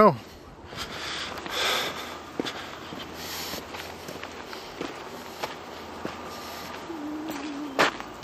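Footsteps on a dirt trail with scuffs and brushing while walking, and a sharp knock just before the end.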